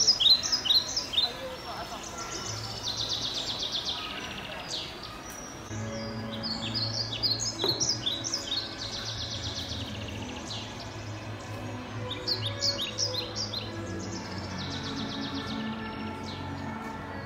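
Birds chirping, in clusters of short, sharp, high calls and quick trills, over a low steady hum.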